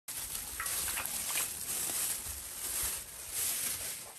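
Clear plastic bag crinkling and rustling as raw mutton chunks are squeezed and tipped out of it into a wok of cold water.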